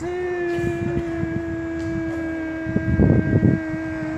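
A single long steady tone, sagging slightly in pitch, held for about four seconds over the low engine rumble of a coach pulling in, the rumble swelling about three seconds in.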